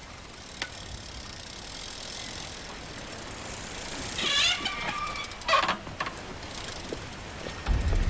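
Bicycle being ridden along a road, with a short high squeal about four seconds in and a sharper noise a second later. A loud low rumble comes in just before the end.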